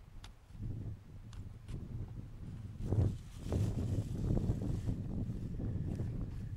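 Wind buffeting the camera microphone in gusts, a low uneven rumble with its strongest gust about three seconds in.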